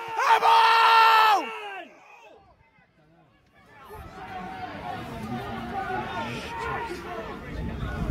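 A spectator's loud, drawn-out shout held on one pitch, fading out about a second and a half in. After a brief lull comes a steady murmur of spectators' voices from about four seconds in, with a low rumble near the end.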